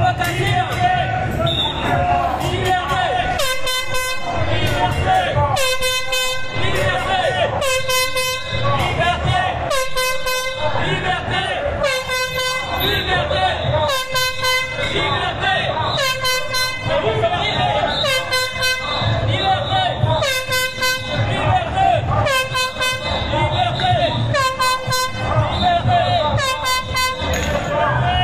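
An air horn blown in short blasts about every two seconds, starting about four seconds in and keeping an even rhythm, over the voices of a marching crowd.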